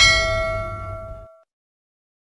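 A bell-like chime struck as the closing note of the outro music, ringing with several clear tones and fading over a low music bed. The sound cuts off suddenly about a second and a half in.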